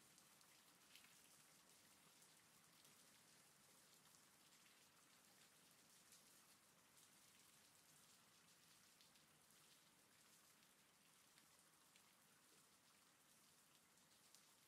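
Faint steady rain, a patter of raindrops with a few louder single drops.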